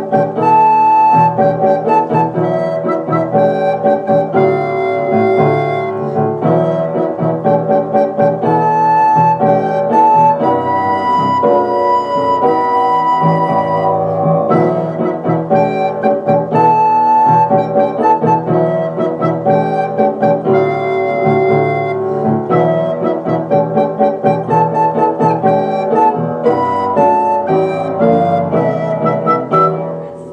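Soprano recorder playing a melody over a recorded keyboard accompaniment with a steady beat.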